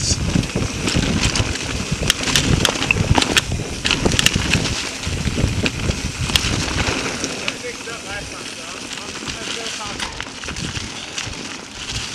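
Mountain bike riding on a dirt singletrack covered in dry leaves: wind on the microphone, tyres rolling over dirt and leaves, and frequent sharp clicks and rattles of the bike over the trail. The rumble and rattling ease off a little past halfway.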